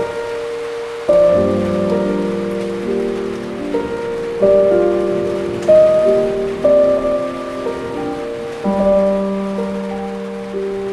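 Slow piano chords, each struck and left to fade, played over a steady hiss of rain falling on a hard surface.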